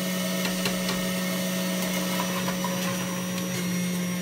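Electric juice extractor's motor running steadily with an even hum as turmeric root is fed through, with a few light ticks.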